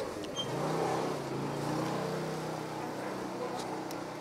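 A motor vehicle engine running steadily, its pitch rising a little about half a second in and then holding.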